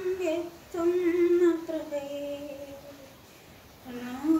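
A woman singing a Christian devotional song unaccompanied, holding long notes that step down in pitch; her voice fades out about three seconds in, leaving a short pause.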